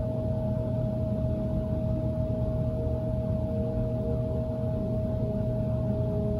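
Ambient meditation drone: one steady held ringing tone over a low, unchanging hum, with no beat or change.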